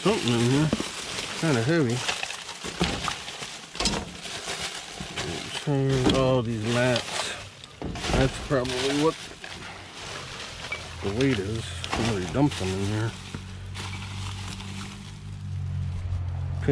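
Plastic trash bags rustling and crinkling as gloved hands dig through dumpster garbage, with a person's voice at intervals. A steady low hum joins about ten seconds in.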